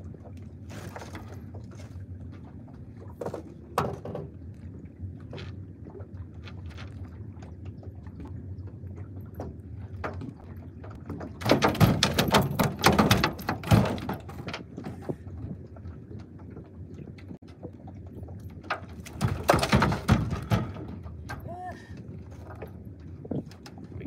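A landed redfish flopping in a landing net on a boat deck, with the net and gear clattering. It comes in two loud bouts, about eleven seconds in and again around nineteen seconds, over a steady low rumble of wind and water.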